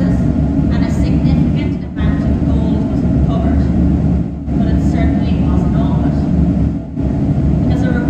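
A woman talking into a headset microphone in short phrases, over a steady low machine rumble.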